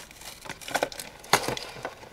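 Plastic packaging being handled, crinkling, with a few sharp clicks; the loudest click comes about two-thirds of the way in.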